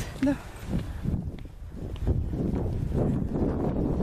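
Uneven low rumble of wind and handling noise on a handheld camera's microphone while walking outdoors, with a few faint footsteps.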